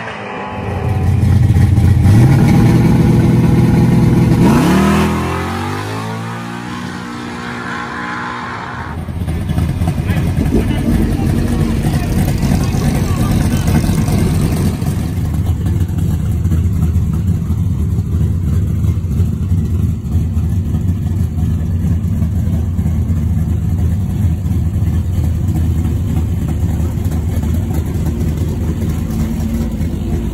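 A big-block Chevy V8 on nitrous in a 1966 Chevelle station wagon at full throttle down the drag strip, its pitch climbing through the gears before fading away about five seconds in. Later the same engine rumbles steadily at low speed as the wagon rolls through the pits.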